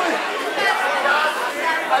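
Crowd chatter: many spectators talking at once, overlapping voices with no single speaker standing out.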